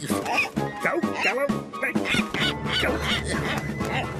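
Cartoon seagull squawking again and again in short calls, over background music.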